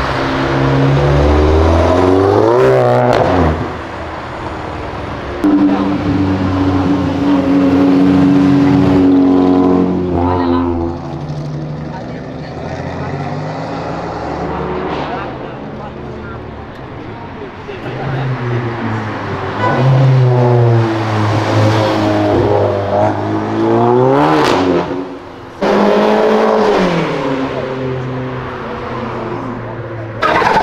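A series of cars driving off one after another, engines revved hard so their pitch sweeps up and falls away with each pass, one car holding steady high revs for a few seconds early on. A brief sharp bang cuts through about 24 seconds in.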